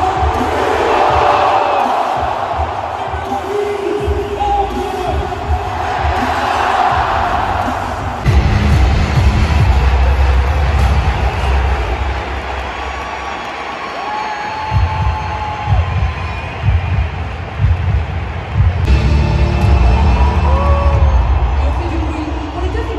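Large stadium crowd cheering, with a few rising and falling whistles or shouts, over loud music from the stadium sound system; from about eight seconds in a heavy low booming joins.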